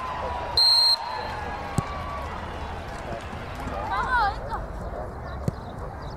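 Referee's whistle, one short high blast about half a second in, signalling the kickoff to restart play after a goal. Voices carry on around it, and there are single knocks later on.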